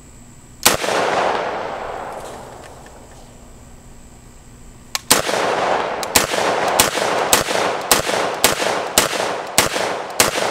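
Vepr AK-pattern semi-automatic rifle in 7.62x39 firing. A single shot comes about a second in and its echo dies away; after a pause of some four seconds comes a string of about nine shots, roughly two a second, each echoing.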